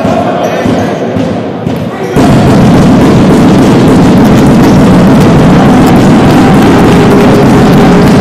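Basketball game in a large sports hall: ball bouncing and voices on court. About two seconds in, the sound jumps abruptly to a loud, dense, steady din that stays at that level.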